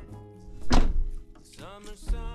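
Background music with a single dull thunk about a third of the way in.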